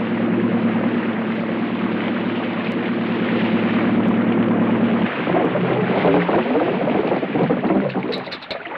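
Small boat's outboard motor running at a steady pitch, then about five seconds in it throttles back, the note falling and wavering as the boat slows.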